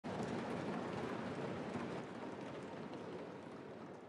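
Applause from many people in a large chamber: a dense patter that dies away.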